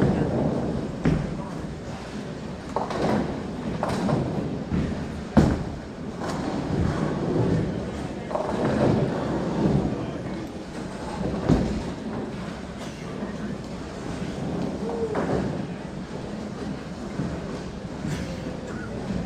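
Bowling alley: bowling balls rolling down the lanes and pins being knocked down, with several sharp knocks and crashes, the loudest about five seconds in, over background chatter of voices.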